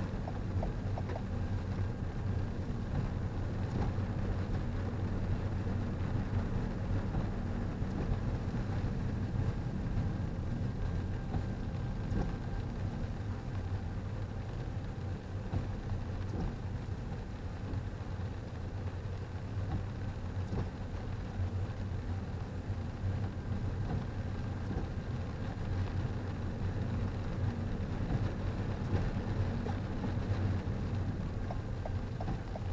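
Steady low hum of a car heard from inside the cabin as it rolls slowly on wet pavement, with a few faint ticks.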